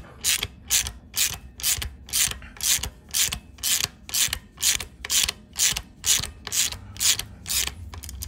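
Hand ratchet clicking steadily, about two clicks a second, as it backs off the nut of an on-head valve-spring compressor to release a compressed valve spring.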